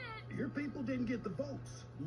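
Cartoon dialogue played through an iMac's speakers: a voice talking in short bending phrases over a steady low hum.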